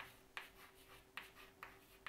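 Chalk writing on a chalkboard: about five short, sharp chalk strokes and taps as the words are written, with a faint steady hum underneath.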